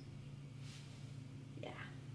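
Quiet room with a low steady hum, a brief faint hiss about half a second in, and a softly spoken "yeah" near the end.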